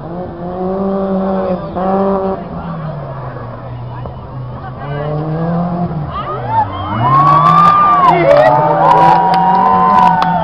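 Four-cylinder engine of a 1991 BMW 318i (E30) rally car running hard, easing off briefly about two-thirds of the way in, then pulling again and getting louder near the end as the car comes close. Spectators' voices and a laugh sound over it.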